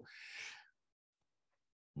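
A man's short, soft intake of breath, lasting about half a second, then dead silence.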